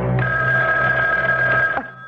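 A telephone ringing: one ring of about a second and a half that starts just after the beginning and cuts off near the end, over the last sustained chord of the music underneath.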